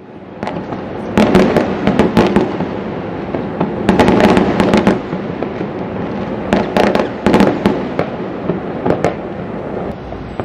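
Midnight New Year fireworks going off across a city: a continuous dense crackle with frequent loud sharp bangs that come in clusters. It fades in over the first second.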